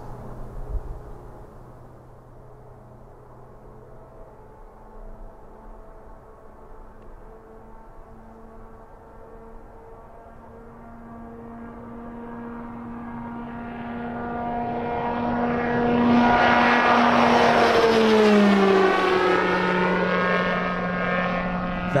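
Beta Technologies CX300 'Alia' all-electric aircraft taking off toward the listener: a faint hum from its propeller and electric motor grows steadily louder, then drops in pitch as the aircraft passes and climbs away. The sound is quiet for an aircraft at takeoff power.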